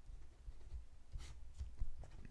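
Ballpoint pen writing on paper: faint scratching strokes as a few words are written out by hand.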